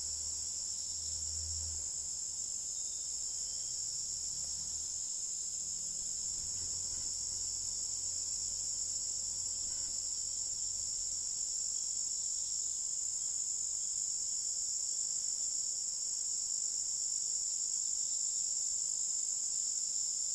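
Insects chirring in a steady, unbroken high-pitched drone, with a faint low rumble in the first few seconds.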